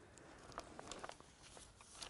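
Near silence, with a few faint ticks and rustles of notebook pages being handled.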